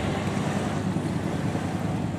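Steady outdoor background noise, a low rumble with a hiss above it, with wind on the microphone.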